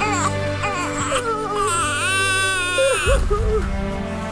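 Newborn baby crying: a few short cries, then one long wail about two seconds in, over soft background music.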